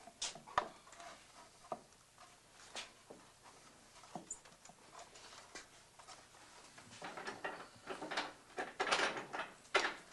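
Wooden patch strips and an old wooden trim panel being handled and fitted on a workbench: scattered light knocks, taps and scrapes of wood on wood, growing busier and louder over the last three seconds.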